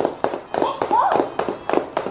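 Baby Alive crawling doll crawling on a laminate floor: its hands and knees strike the floor in a quick, uneven run of taps, several a second. A short voice glides up and down about a second in.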